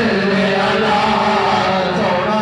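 Group of men chanting together in a Sufi devotional gathering, long held notes over a steady low tone.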